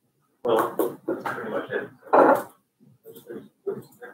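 A person's voice: several short vocal stretches without words that the recogniser could make out, the loudest about two seconds in and fainter ones near the end.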